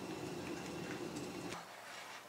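Office room tone: a steady low hum that drops away abruptly about one and a half seconds in, leaving a quieter background with a few faint clicks.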